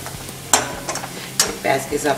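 Steel spatula scraping against a metal kadhai as chopped onion and spice powders are stirred and fried in oil, with a steady light sizzle; two sharp scrapes come about half a second and a second and a half in. This is the masala being roasted with the onions.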